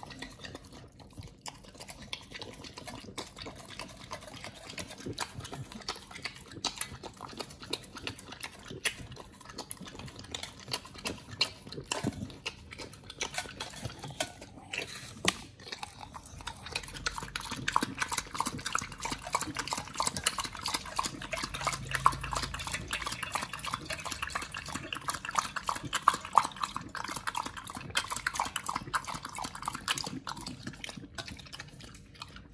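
A pit bull eating a raw meal from a bowl: scattered chewing and clinks against the bowl, then, from about halfway, a fast, steady run of wet lapping sounds that grows louder.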